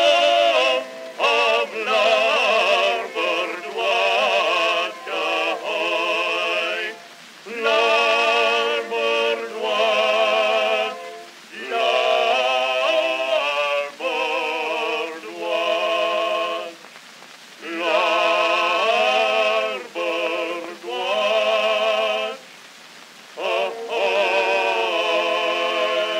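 Edison Amberol cylinder recording from 1910 of a bass-baritone and tenor singing a duet, holding long notes with a wide vibrato and breaking every second or two, over a faint hiss of surface noise.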